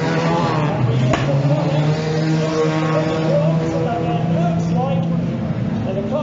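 Banger racing car engines running on the track in a steady drone, with one sharp bang about a second in.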